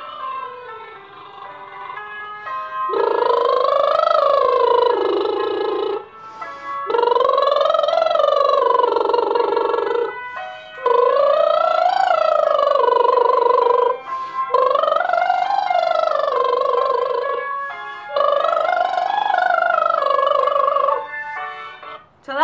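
A woman's lip trills, her lips buzzing as her voice glides up a scale and back down, five times with short breaks between them. In the breaks, brief steady tones from the vocal warm-up recording on her phone give the next cue.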